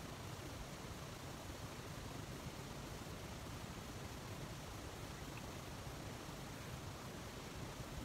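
Faint, steady hiss of room tone with no distinct sounds.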